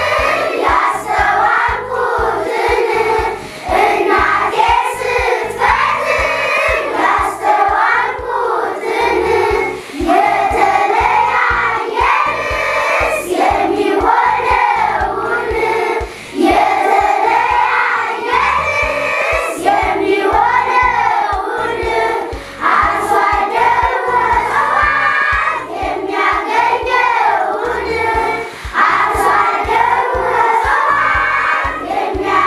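A choir singing together, with children's voices in it.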